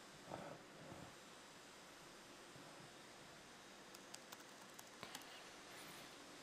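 Near silence: a faint steady hiss, with a few faint clicks around four to five seconds in.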